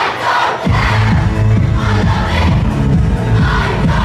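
Loud dance music from a DJ's sound system with a packed crowd shouting and singing along. The bass is cut at the start and comes back in under a second in, pounding steadily on the beat. The recording is distorted, as from a phone held near the rig.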